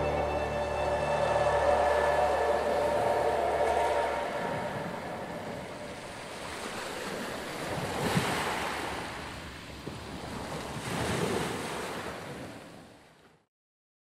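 Ocean waves washing, swelling twice and then fading out to silence near the end. A held music chord dies away under them in the first few seconds.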